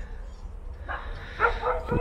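A dog yapping a few short times, starting about a second in, over a low steady rumble.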